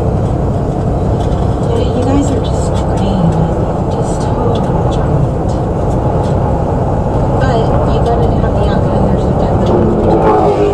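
Steady road and engine noise from a car cruising on a highway, heard from inside the cabin, with a faint voice under it.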